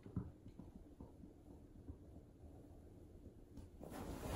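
Near silence: quiet room tone with faint rustling, a brief soft bump just after the start, and rustling growing louder just before the end.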